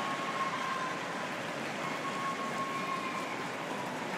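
Steady arena crowd noise, an even hiss with no ball strikes standing out, and a faint held tone sounding twice.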